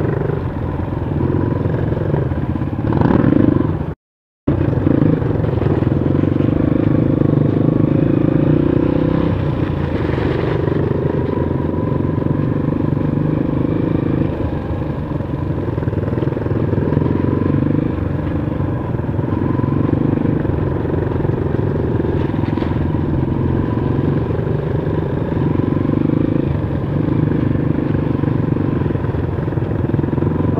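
A Honda CRF230 dirt bike's single-cylinder four-stroke engine runs at low speed over rough ground. Its note rises and falls in swells every few seconds as the throttle is opened and eased. The sound cuts out completely for a split second about four seconds in.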